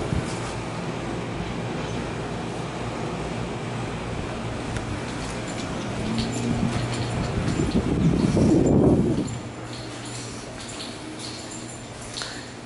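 Steady background noise with a low hum, growing louder between about six and nine seconds in, then dropping to a quieter level for the last few seconds.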